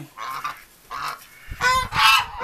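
Geese honking: a few short calls, the loudest near the end.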